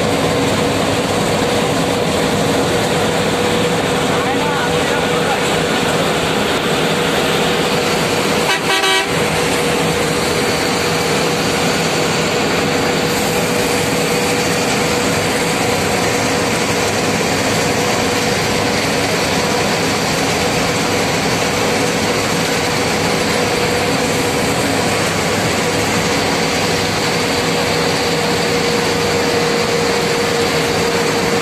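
Road and engine noise heard inside a vehicle's cabin while it cruises on a highway: a steady loud rush with a constant hum, briefly broken about nine seconds in.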